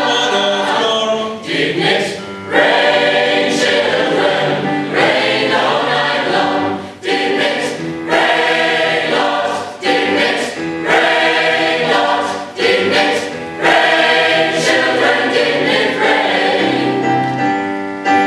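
Mixed choir singing a gospel song in full harmony, in phrases broken by short breaths every second or two.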